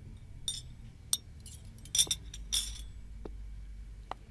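Glasses and crockery clinking in a few separate light clinks, the loudest about two seconds in, as dishes are handled on a serving tray.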